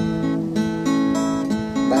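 Acoustic guitar playing an A major chord, its notes picked one after another and left ringing.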